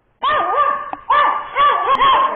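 A 12-year-old Maltese dog barking in a quick run of high, rise-and-fall barks, four or five in about two seconds, starting about a quarter second in. It is barking at unfamiliar people standing near it.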